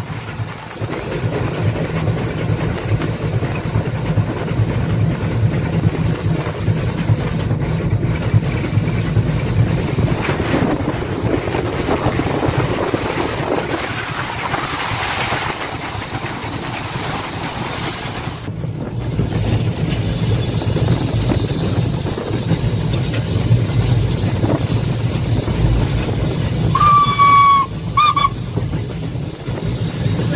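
Metre-gauge Haine-Saint-Pierre steam locomotive running along the line, heard from its cab: a steady running rumble with steam hiss and wheels on the rails. Near the end the steam whistle sounds twice, a blast of about a second followed by a short one.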